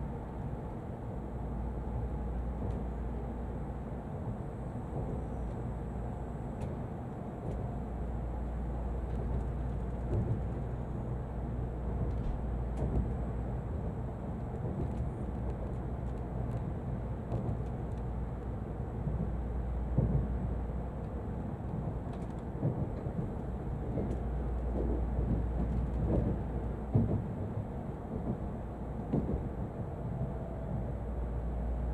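Cabin noise inside an N700-series Shinkansen running at low speed as it comes into a station: a steady low rumble with occasional short clunks from the wheels over rail joints and points, more frequent in the second half.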